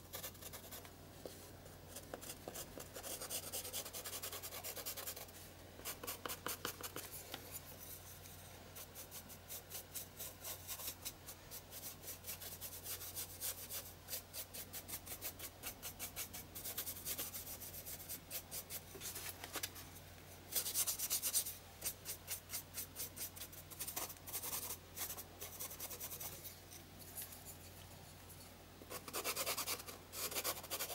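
Charcoal pencil scratching on textured journal paper, then a paintbrush scrubbing the charcoal shading in to blend it, in quick short strokes that come in uneven runs. The loudest run is about two-thirds of the way in.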